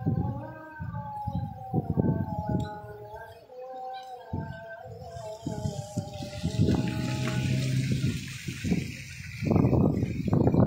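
Strong gusty sea wind buffeting the microphone in uneven rumbling gusts, with a sustained whistling tone over it that fades about seven seconds in. A rushing hiss of wind and rough water rises in the second half, and heavier gusts hit near the end.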